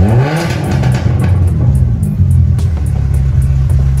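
2002 Volkswagen Polo 1.6 engine through a straight-through exhaust with only a rear muffler, revved once at the start, its pitch rising, then settling back to a deep, steady exhaust rumble.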